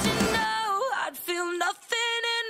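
Pop-rock song. The full band and drums drop out about half a second in, leaving a woman's voice singing almost alone.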